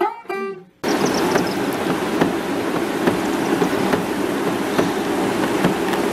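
The last few plucked-string notes of a tune, cut off abruptly under a second in by a steady rushing outdoor noise with faint scattered ticks.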